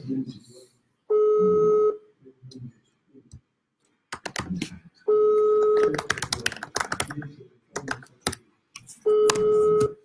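Ringback tone of an outgoing phone call ringing out: three rings, each a steady tone just under a second long, about four seconds apart. Clicking between the rings.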